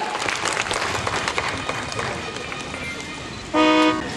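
Outdoor crowd noise with scattered clicks, then near the end one short, steady horn blast of under half a second, the loudest sound.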